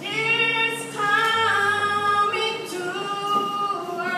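A woman singing a slow song unaccompanied, holding long notes.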